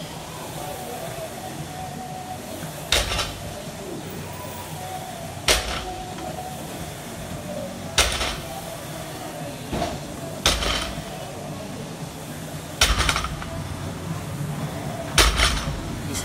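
Barbell loaded with rubber bumper plates set down on the floor after each deadlift rep: six thuds with a metallic clank, about one every two and a half seconds. Each rep is a dead stop with no bounce, with the grip swapped between reps.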